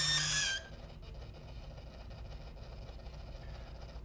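Rinntech resistance microdrill's motor whining as it drills into timber, dropping slightly in pitch and cutting off about half a second in; faint room tone follows.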